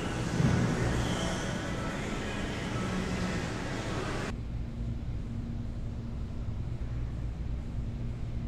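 Background noise of a large indoor hall: a steady hiss with a low rumble and hum. About four seconds in, the hiss cuts off abruptly, leaving only the low rumble and a steady low hum.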